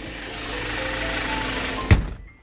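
Hyundai Porter truck's engine running with a steady noise, then one loud thump near the end as the cab door is shut.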